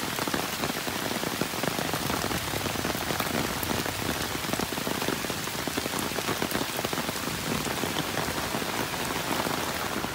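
Heavy rain falling on muddy floodwater covering a road: a steady, dense hiss of drops with fine patter throughout.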